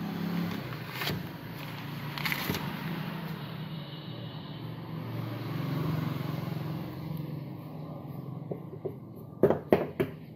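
A steady low hum of background traffic, with light rustling as the paper and small blade are handled. Near the end come three sharp clicks close together as small metal bracelet parts are handled.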